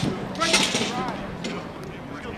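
A man shouting a drill command, "cross", outdoors. A loud hissy burst comes about half a second in, then a low hum and general outdoor background.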